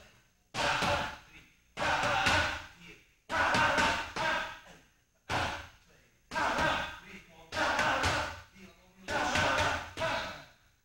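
Boxing gloves striking Muay Thai pads in a rhythm: seven bursts about a second to a second and a half apart, some holding two quick strikes, each ringing on briefly in the hall.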